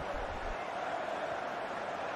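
Steady, even background noise between the commentators' lines, a featureless hiss with no distinct events.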